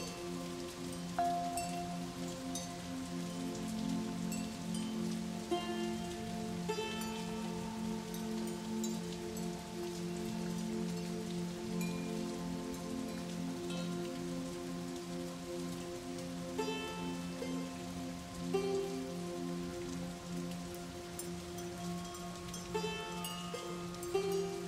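Slow background music of held, sustained chords with occasional short bright notes, over a steady patter of rain.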